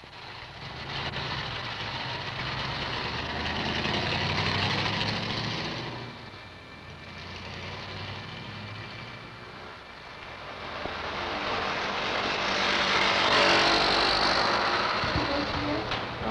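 City street traffic: a steady wash of passing cars and trucks that swells, eases off in the middle, then swells again near the end.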